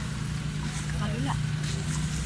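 A steady low mechanical hum, with a faint voice briefly about a second in.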